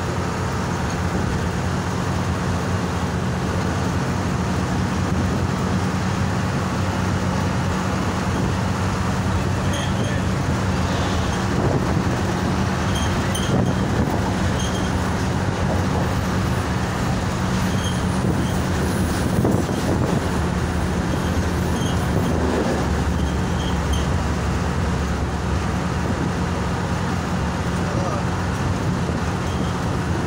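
Coach bus engine running steadily at cruising speed, with tyre and road noise, heard from the front of the cabin. From about ten seconds in until about twenty-four seconds, faint regular clicking joins it as a passenger train passes alongside.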